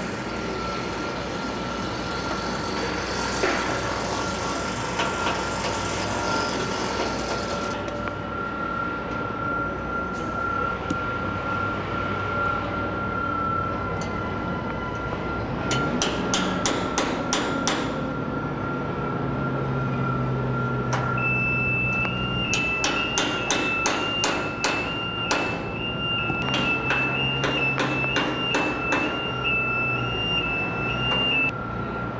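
Construction-site machinery: an engine running with a steady high whine. Two runs of quick, sharp knocks at about four a second come through it, a short run about halfway through and a longer one over the last third, with a second, higher tone joining near the end.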